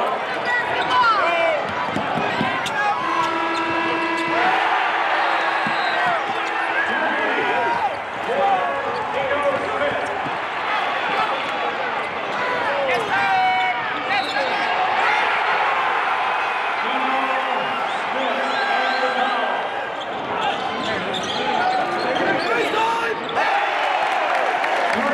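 Basketball game sound in a large arena: the ball dribbling on the hardwood court and sneakers squeaking, over steady crowd noise and shouting. A held horn-like tone sounds from about three to seven seconds in.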